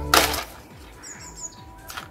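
A brief, loud swish as a plastic DVD case is tossed into shot and caught by hand. After it, a few faint high bird chirps from the garden.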